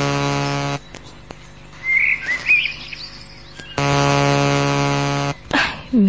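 A held, bright musical chord that cuts off under a second in, a few high bird chirps about two seconds in, then the same held chord again for about a second and a half.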